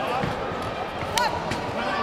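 Overlapping shouting voices echoing through a large sports hall, with a single sharp smack a little over a second in, the sound of a blow landing in a kickboxing clinch.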